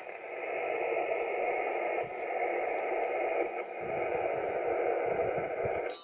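Yaesu FT-857 transceiver's speaker giving a steady, band-limited hiss of receiver static: the radio has dropped back to receive after its VOX-keyed CQ call and is listening for a reply. The hiss cuts off just before the end, as the next call begins.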